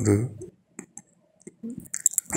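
A man's voice in a recorded phone voice message ends a phrase, then a pause with a few short, faint clicks before he speaks again.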